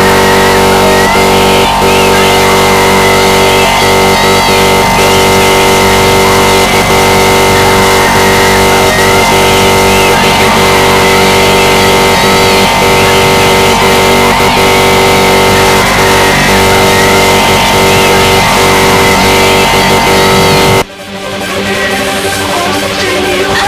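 Loud, dense music track: a continuous wall of sound that cuts out suddenly about a second before the end, then starts building back up.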